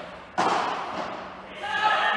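A padel ball struck hard about half a second in, a sudden hit that echoes in the covered hall.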